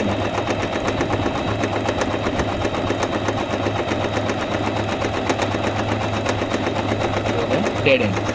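Singer 8280 electric sewing machine running steadily, the needle stitching rapidly and continuously through folded fabric over a low, even motor hum.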